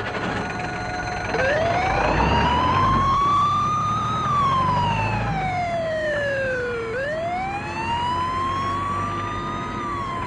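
A police siren wailing in slow sweeps. It starts about a second and a half in, rises for a few seconds, falls, then rises again near the end. A low rumble runs under it for a few seconds in the first half.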